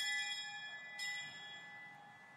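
A high-pitched bell struck twice, the second strike about a second in, each ringing on and fading. It is the bell that signals the entrance procession to begin.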